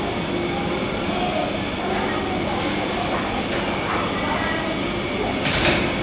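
Busy supermarket interior ambience: indistinct voices of shoppers over a steady background drone, with a short, loud hiss-like noise about five and a half seconds in.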